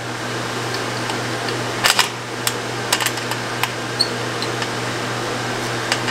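Flathead screwdriver tightening the screw on the ground lug of a metal electrical disconnect box: scattered small metallic clicks and ticks, with a sharper double click about two seconds in. A steady low hum runs underneath.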